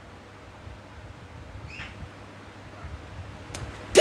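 Low, steady room noise from a phone's microphone, with a faint brief sound about two seconds in and a single short click shortly before the end.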